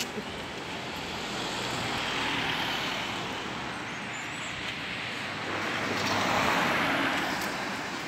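Road traffic: cars passing by on the street, one rising and fading about two to three seconds in and a louder one near the end.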